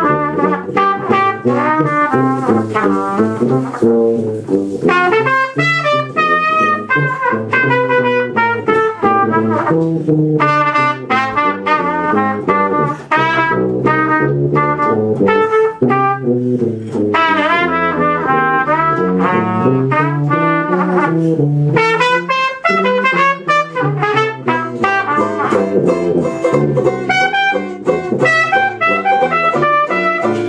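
A Dixieland jazz band playing live: a trumpet carries the melody over the band, with a tuba walking the bass line underneath.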